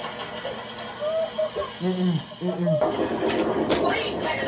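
Audio of a funny video playing through a TV: a voice gives two short falling calls, then a steady rush of noise begins about three seconds in.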